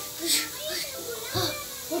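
Indistinct children's voices chattering, with a short hiss about a third of a second in.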